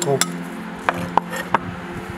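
A metal spoon mixing beef tartare on a ceramic plate, clicking sharply against the plate about four times.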